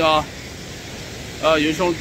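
A man speaking in short bursts, with a steady background rush of wind and small waves on the shore filling the pause between his words.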